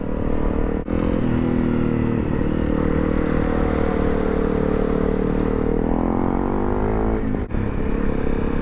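Honda CRF250 Rally's single-cylinder engine running steadily under way through floodwater, with a hiss of water spray from the tyres in the middle. The engine note falls near the end, and the sound dips briefly twice.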